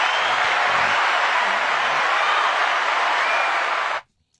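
Crowd cheering and applause, a recorded sound effect, holding steady at full level and then cutting off suddenly at the end.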